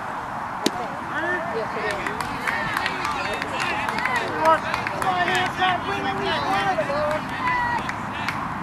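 Several voices of players and spectators calling out and talking across a ballfield. A single sharp knock comes less than a second in.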